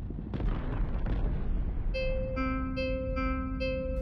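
Sci-fi synthesizer sound design: a deep rumbling whoosh swells near the start, then about halfway through a run of short electronic beeping tones starts, alternating between two pitches.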